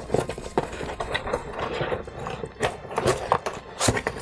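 Items being handled inside an open cardboard box: irregular clicks, taps and rustles of cardboard and packaging as a hand rummages through it.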